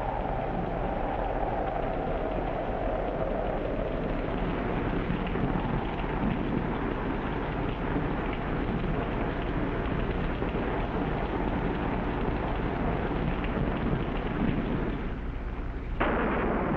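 Heavy rain sound effect: a steady downpour hissing evenly, with thunder rumbling. A high tone slowly falls away over the first few seconds.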